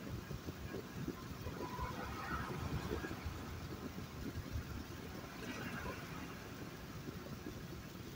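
Car driving on a city road: a continuous, uneven low rumble of engine and tyre noise.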